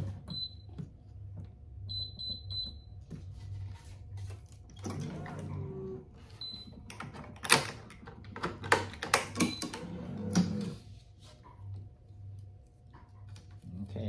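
Electronic racquet-stringing machine tensioning a cross string at 48 pounds: short high beeps (one, then a quick run of three, then another), with a faint steady hum under them. In the middle a run of sharp clicks and snaps from the string and clamps being handled.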